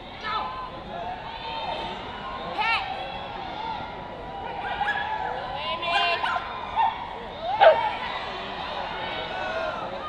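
A small dog barking several times in short calls while it runs an agility course, over the steady background noise of an indoor arena.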